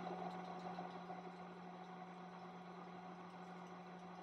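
Faint room tone with a steady low hum.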